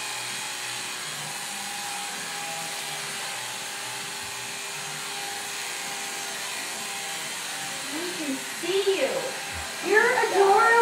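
Corded electric hair clipper running steadily as it cuts short buzzed hair, with a steady hum that fades out about seven seconds in. A person's voice follows near the end.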